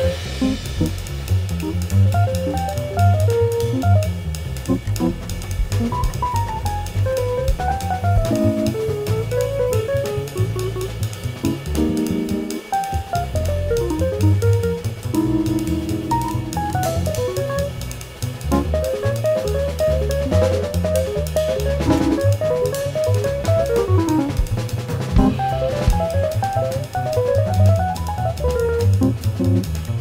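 Instrumental jazz: a busy drum kit with cymbals, hi-hat and bass drum, under fast running melodic lines and a bass line.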